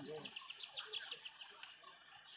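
A quick, even run of high chirps, about eight a second, in the first half, typical of a small bird calling, over faint distant voices.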